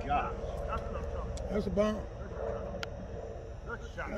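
Men's voices talking and calling out indistinctly, over steady outdoor background rumble and a faint steady hum.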